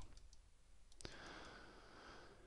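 Near silence: faint room tone with one sharp click about a second in, from the computer controls being worked to move the 3D view.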